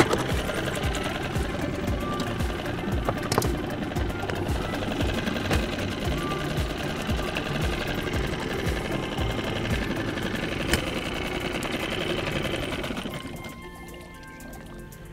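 Small Suzuki outboard motor running at low speed with a fast, even pulse, then stopping about a second before the end.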